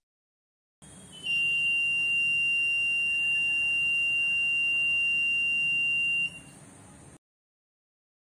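Small electronic buzzer on an ESP8266 NodeMCU prototype sounding one steady high tone for about five seconds, starting about a second in and then cutting off. It is the fire alert, set off when the DHT11 sensor's temperature crosses its threshold under a lighter flame.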